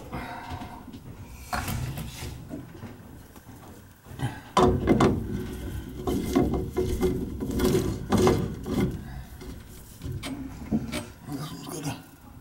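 Plastic water filter housing bowl being screwed onto its head by hand: the plastic threads rub and scrape in a string of irregular strokes that start about four seconds in.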